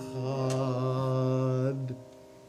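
A man holding one long sung note at the close of a Hebrew worship song, accompanied on acoustic guitar. The note breaks briefly right at the start and dies away just before the end.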